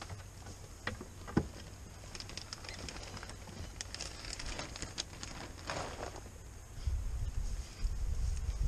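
Light knocks and clicks of plastic scrubber jars and their tubing being handled and set down on a wooden box top, with two sharper knocks about a second in. Low rumbling near the end.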